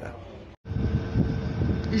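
Steady engine drone inside a vehicle or machine cab, with a thin constant hum over it. It comes in abruptly about half a second in, after a brief moment of silence.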